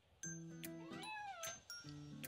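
A domestic cat meows once about a second in, a single call rising then falling in pitch, asking for its breakfast. Light background music plays under it.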